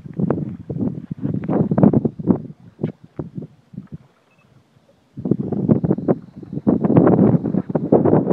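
Wind buffeting the phone's microphone in uneven gusts, with a short lull a little past the middle.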